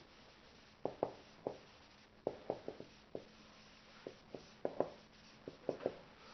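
Dry-erase marker writing on a whiteboard: a run of short, irregular strokes and taps, faint against the room.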